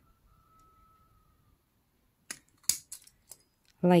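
Hand-held slot punch cutting a slot through a paper circle tag: a handful of short, sharp metal clicks a little over two seconds in, one louder than the rest.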